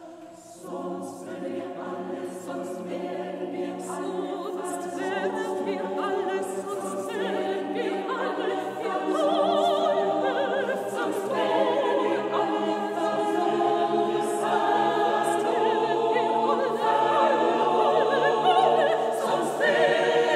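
Mixed four-part choir with a solo soprano singing in German at a quicker tempo, entering together about a second in. They repeat short syllabic phrases with crisp 's' sounds and grow gradually louder.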